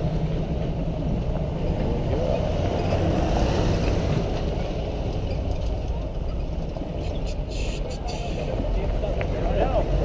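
Jeep engines running slowly as a line of off-road jeeps drives past on a rough dirt road: a steady low hum, with faint voices in the middle and a few light clicks about seven seconds in.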